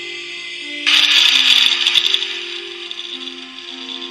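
Music from a smartphone's small built-in speaker, with steady held notes. About a second in, a loud, harsh, crackly burst comes in over it, lasting about a second before fading.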